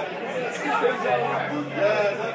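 Many voices chattering and talking over one another in a crowded bar room, with a steady low tone coming in about a second in.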